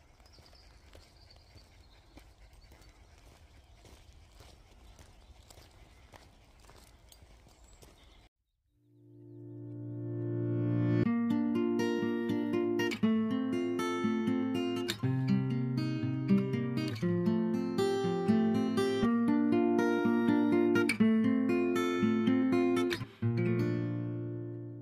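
Faint outdoor background noise for about eight seconds, then a short gap of silence and background music fades in: a plucked guitar tune over a steady low note, which is the loudest sound.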